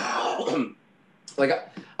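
A man clears his throat once, a short rasping sound lasting under a second, followed after a brief pause by the start of speech.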